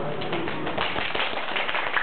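Audience applause: many people clapping, a dense patter that fills in within the first half second.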